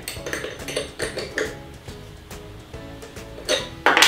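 Small steel open-end wrench clinking against the threaded adapter nut on a cordless grass trimmer's shaft as it is tightened, a run of light metallic clicks, then the wrench set down on the table near the end. Background music plays throughout.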